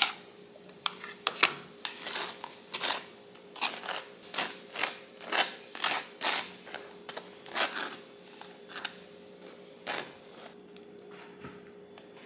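Table knife scraping cream cheese out of a plastic tub and spreading it on a bagel: a run of short scraping strokes, about one or two a second, that stop about ten seconds in.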